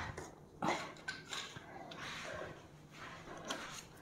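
Faint handling noise as tools are picked up: soft rustling with a few light clicks and knocks.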